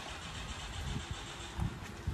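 Heavy-equipment diesel engine idling steadily, with a few irregular low thumps.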